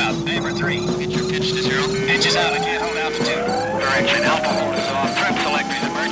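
A single synthesizer tone gliding slowly and steadily upward in pitch, over broken radio-style voice chatter and synth music.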